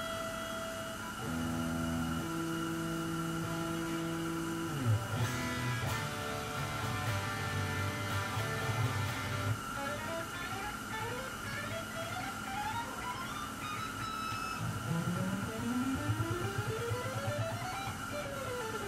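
PRS SE Custom 24 electric guitar being played to check its intonation: a few held notes and chords at first, then fast runs of notes climbing up the neck in the second half.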